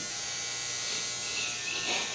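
Electric hair clippers running with a steady buzz during a haircut.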